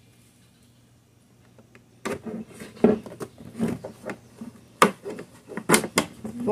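Scissors cutting through a thick plastic liquid-soap jug: a string of uneven snips that starts about two seconds in, after near silence.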